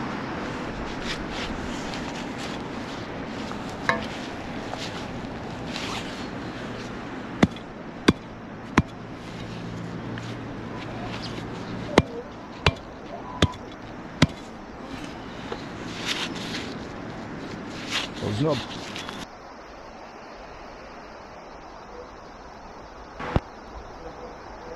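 Rustling and handling noise from digging in grassy turf with a long-handled metal digger, with a run of sharp knocks or clicks, each under a second apart, midway through.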